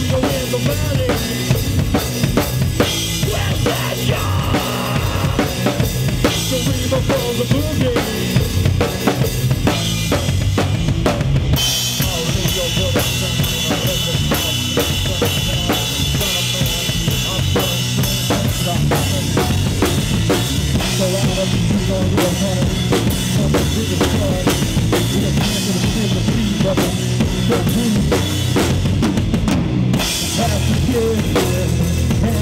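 Heavy metal band playing an instrumental passage live, with the drum kit to the fore: fast, driving bass drum, snare and cymbals over electric guitar and bass. About a third of the way in, a brighter, fuller sustained layer comes in over the drums.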